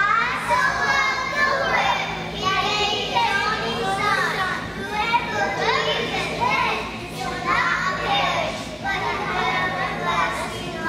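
A group of preschool children speaking together in chorus, over a steady low hum.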